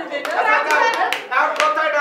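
Two women laughing hard and clapping their hands, with about four sharp claps roughly half a second apart.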